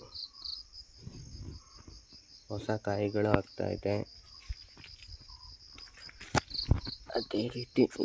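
Crickets chirping in a steady, high-pitched pulsing trill that runs without a break, with brief handling clicks of the phone among the plant leaves near the end.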